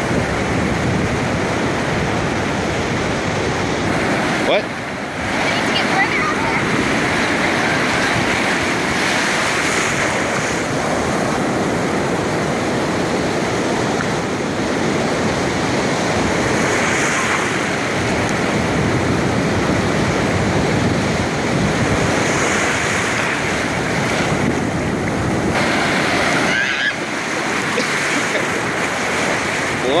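Breaking surf and foaming whitewater rushing around the camera in the shore break: a loud, steady churning roar with a brief lull about five seconds in.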